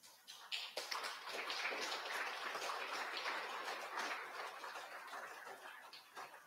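Congregation applauding: clapping breaks out suddenly, holds for a few seconds, then thins toward the end into scattered claps.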